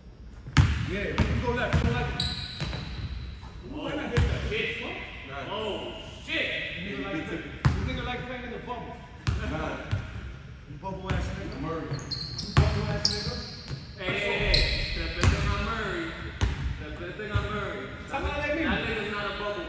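A basketball bouncing on a hardwood gym floor during play: irregular sharp thuds that echo in the large hall, mixed with men's voices.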